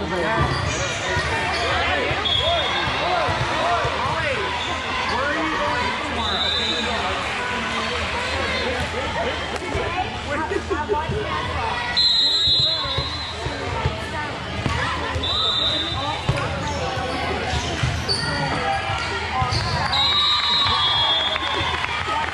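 Busy volleyball gym: many overlapping voices of players and spectators calling and talking, with the thuds of volleyballs being hit and bouncing on the court. Short high referee whistle blasts sound six times.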